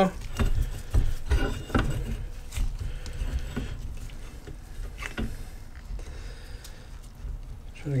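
Light metal clicks and knocks of a C-frame ball joint press being set over a U-joint and its screw turned to press the new bearing caps into an axle shaft yoke. The clicks are denser in the first couple of seconds and thin out after.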